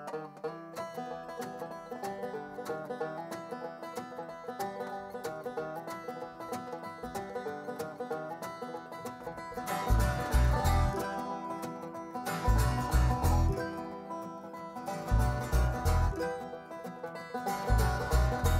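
Bluegrass string band playing an instrumental passage: banjo, mandolin and acoustic guitar picking together, with the upright bass coming in with low plucked notes about ten seconds in.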